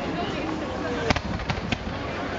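Fireworks going off: three sharp bangs a little over a second in, a quick series, over the steady chatter of a crowd.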